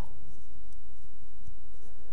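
Steady faint hiss of room tone in a small room, with no speech.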